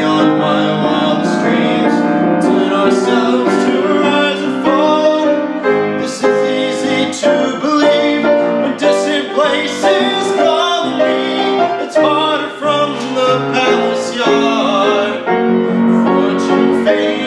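A man singing a musical-theatre song, accompanied by a grand piano.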